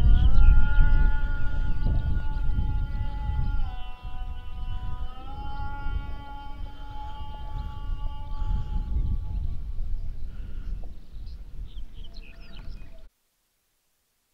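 A long, drawn-out melodic line of held notes that step and slide in pitch, over a heavy low rumble of wind on the microphone. The sound cuts off suddenly about a second before the end.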